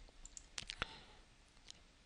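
Faint computer mouse clicks: several in the first second and one more near the end.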